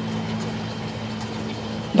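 Steady low hum under a faint, even hiss: outdoor background noise with no distinct events.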